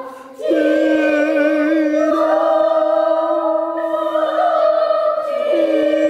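Children singing together in long held notes. There is a short breath break at the very start, then the sustained tones step to a new pitch a couple of times.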